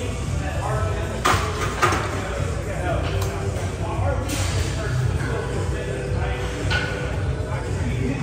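Busy gym ambience: background voices and music in a large room, with a few sharp clanks of metal weights.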